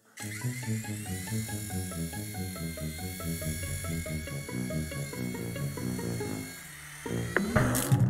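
Quick, bouncy cartoon music with a steady high buzzing whir over it: a toy remote-control helicopter sound effect. The music drops away shortly before the end, and a quick clatter of knocks follows as the helicopter crashes.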